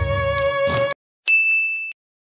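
Background music with held notes stops abruptly about a second in. After a brief silence comes a single bright ding, a chime sound effect that rings on one high tone and cuts off sharply. It works as a transition sting into a 'a few days later' title card.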